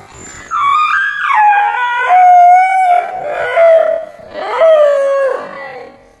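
A dog howling in about three long, wavering calls that slide down in pitch, loud throughout. It is the dog's alarm at a life-size fake tiger it has come nose to nose with.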